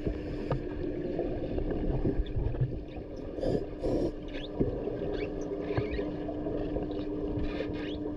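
Muffled underwater noise of a swimming pool picked up by a submerged camera: a low rumble with a steady hum, and two brief louder sounds about three and a half and four seconds in. No bubble noise, as the closed-circuit rebreather lets out no exhaust bubbles.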